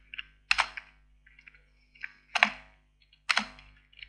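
Computer keyboard keys pressed one at a time: three separate sharp clacks spread over a few seconds, with a few fainter key ticks between them.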